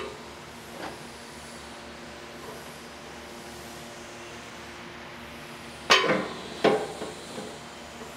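Steel aftermarket bumper clanking twice against the truck's frame mounts as it is lifted into place, the first clank the louder and ringing on briefly.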